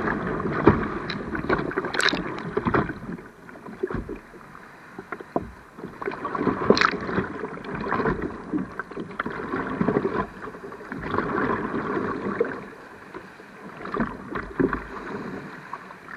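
Sea water sloshing and splashing around a river board at the waterline. It comes in surges every couple of seconds, with short sharp splashes.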